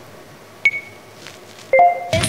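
Countdown beeps: short, high electronic beeps about a second apart, one about a third of the way in and a louder, longer one with lower tones beneath it near the end.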